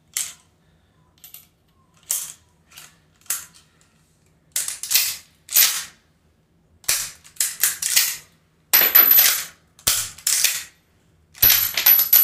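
Lever-action rifle being handled with dummy cartridges: a series of short, irregular metallic clacks and clatters from the cartridges and the action, coming closer together and louder in the second half.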